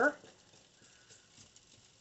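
Faint clinks and scrapes of a metal spoon stirring peas in a stainless steel pot.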